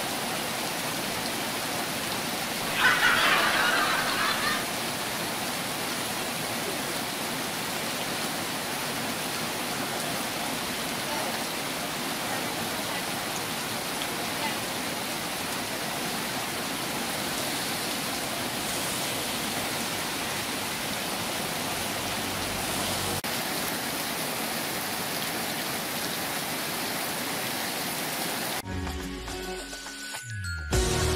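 Heavy rain pouring down steadily, with a brief louder spell about three seconds in. Near the end the rain cuts off and an outro music jingle begins.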